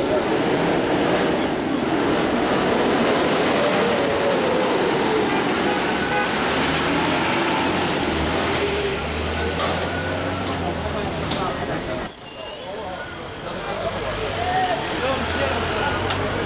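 Busy roadside noise: cars running and passing close by, with a jumble of voices in the background.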